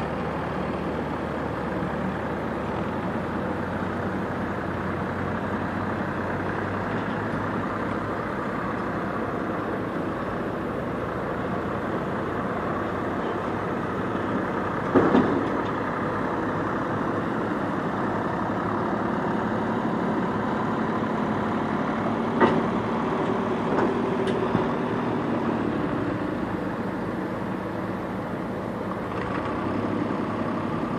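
Diesel engines of a backhoe loader and a farm tractor running steadily while the backhoe's bucket works in loose stone. A few sharp knocks cut through the engine sound, the loudest about halfway through and two smaller ones a few seconds later.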